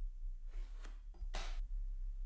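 Watchmaker's tweezers touching the parts of a Valjoux 22 chronograph movement while a spring is fitted: a few small metallic clicks and clinks, the last and loudest about a second and a half in.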